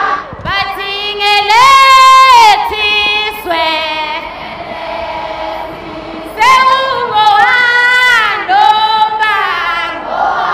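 High women's voices singing two long phrases with a lull between them. The notes are held, rising and falling.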